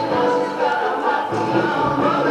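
A song with several voices singing together.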